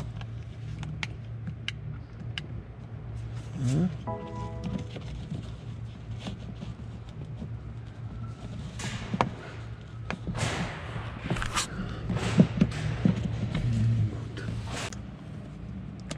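Clicks, knocks and rustling from plastic interior trim and roof-light parts being handled and pressed into place, over a steady low hum. A brief tone sounds about four seconds in, and the handling noise grows busier in the second half.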